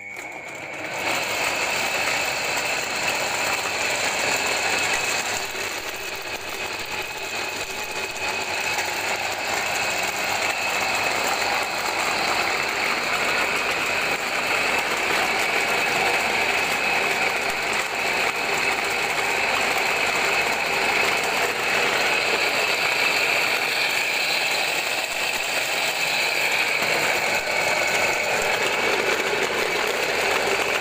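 Motorized soybean grinder running steadily as soaked soybeans feed down from its hopper, after starting up about a second in.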